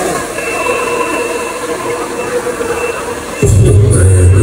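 Handheld hair dryer blowing steadily. About three and a half seconds in, loud electronic music with a heavy bass beat starts and drowns it out.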